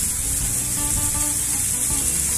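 A small waterfall pouring down a rock face and splashing onto the stones below, a steady hiss of falling water, with music underneath.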